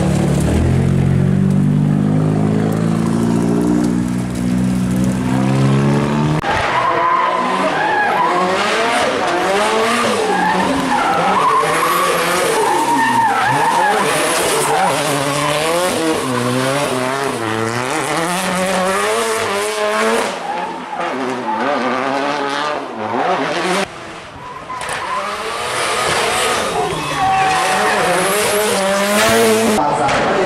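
Race car engine running and revving for the first six seconds, its pitch rising in steps. Then a hillclimb race car is driven hard through tight bends, the engine revs climbing and dropping rapidly with gear changes, with tyre squeal and skidding. It fades briefly near the middle before another car's engine builds toward the end.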